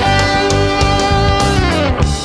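Instrumental break of a band song: electric guitar holds a long note that bends down in pitch near the end, over bass and a steady drum beat.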